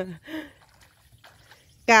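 A woman's voice: speech trailing off, a short vocal sound, then a quiet pause, and a laugh breaking in near the end.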